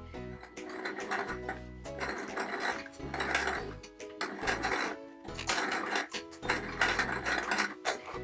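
Domestic electric sewing machine stitching, running in short stop-and-start runs, with background music over it.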